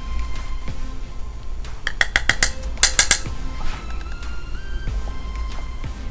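Background music of soft, held tones that step from note to note, with two quick runs of sharp clicks, about two and three seconds in.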